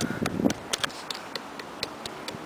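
A fist scraping and knocking at a tree trunk's stringy bark, trying to scratch letters into it. It makes a quick run of irregular sharp clicks and scratches, with a heavier rustle in the first half second.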